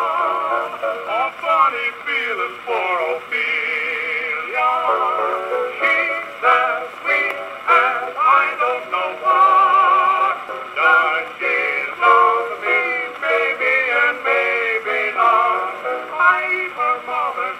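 Acoustic playback of a 1924 Perfect 78 rpm record of a comic duet with accompaniment, on a circa-1910 Columbia 'Sterling' Disc Graphophone with an external horn. The music goes on without a break, wavering melody lines in a thin sound with no deep bass or high treble.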